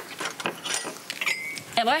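Light clinks and knocks of kitchen utensils and crockery, with a brief ringing tone a little past halfway.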